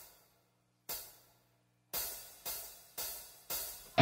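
Drum count-in ticked on a hi-hat: two slow ticks, then four quicker ones at an even beat.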